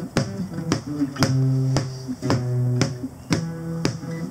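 Acoustic guitars playing a tune together, with a sharp tap about twice a second keeping time: a stick struck on a plastic storage tote as percussion.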